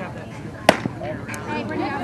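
A softball pitch smacking into the catcher's leather mitt: a single sharp pop about two-thirds of a second in. Faint crowd chatter runs underneath.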